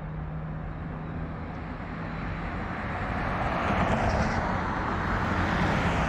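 Road traffic on a multi-lane street, a steady rush of passing vehicles. A car's noise swells and grows louder over the second half.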